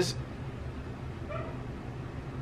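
Room tone with a steady low hum, broken a little past halfway by one brief, faint whimper from a dog.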